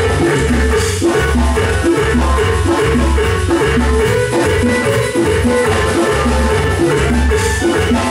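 Loud live Latin dance music from an amplified band with keyboard, carried by a steady, repeating bass beat.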